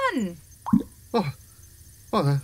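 Two short, wet comic pops about half a second apart, a sound effect of a sci-fi pus-sucking device popping boils.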